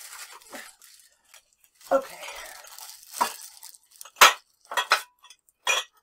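Rustling and crumpling of packing material as glass dishes are lifted out of a box. Near the end come several sharp clinks and knocks of glassware, the loudest about four seconds in.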